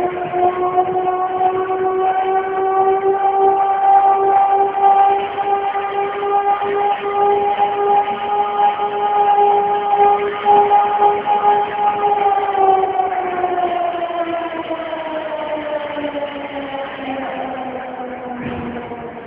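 A siren sounding one long, loud tone with strong overtones, its pitch creeping slightly upward, then winding down in pitch from about twelve seconds in.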